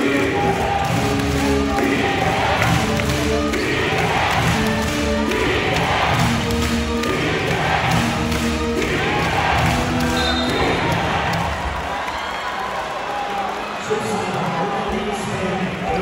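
Arena sound at a basketball game: music over the PA with a repeating pattern, and the crowd chanting or cheering in rhythm with it. A basketball bounces on the hardwood court during a free throw.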